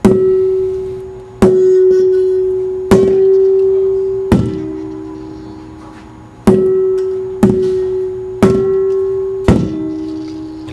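Scuba tanks bounced on a hard floor one after another: eight clanking strikes about a second apart, each ringing on with a steady tone that fades away. The pitch of the ring tells how much air is in each tank, higher for a fuller tank, and the strike near the end rings lower, from the emptiest tank.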